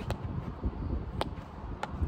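Field hockey stick tapping the ball on artificial turf during a left-right dribble: a few sharp clicks, the two clearest in the second half, over a low rumble.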